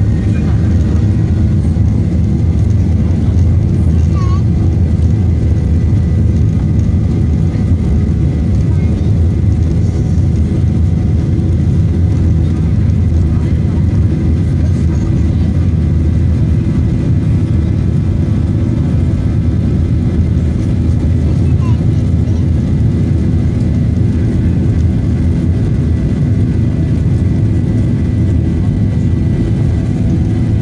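Inside an airliner cabin: the steady low rumble of the jet engines and wheels as the aircraft taxis toward take-off, with a faint steady whine above it.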